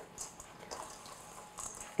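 A silicone spatula stirring rolled oats and chopped pecans in a stainless steel mixing bowl: faint, intermittent scraping and rustling strokes.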